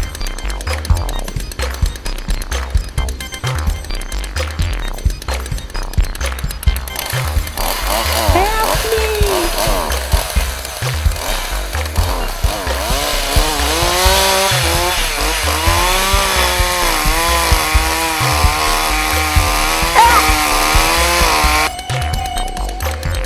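Music with a steady bass beat. From about seven seconds in, a chainsaw sound effect revs up and down over the music, then cuts off abruptly just before the end.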